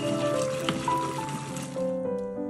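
Background music with steady piano-like notes, over a hiss of ketchup sauce sizzling in a hot non-stick pan as it is stirred with a wooden spoon; the sizzle stops just before the end.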